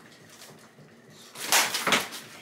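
A sharp slap of a hand on skin near the end, with a second, shorter smack right after it.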